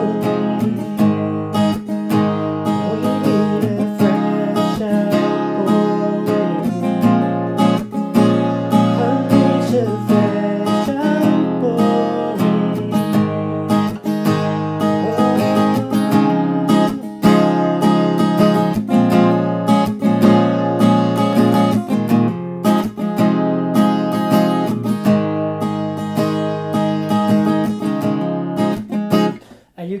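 Acoustic guitar with a capo on the first fret, strummed steadily through a repeating C–Am7–Em–G chord progression, the song's chorus chords. The strumming stops just before the end.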